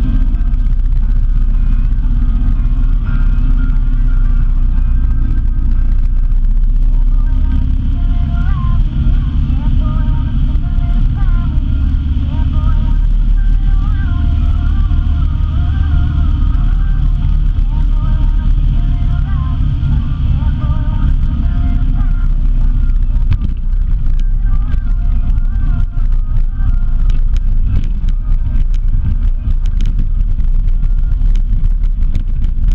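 Road vehicle on the move: a steady, loud engine and road rumble with wind on the microphone.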